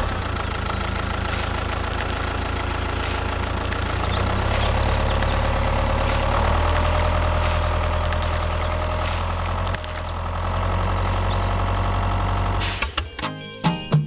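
Tractor engine running steadily with a low, even drone, rising slightly about four seconds in and cutting off abruptly near the end, followed by a few short clicks.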